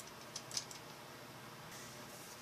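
Low steady room hiss with three faint, quick clicks about half a second in.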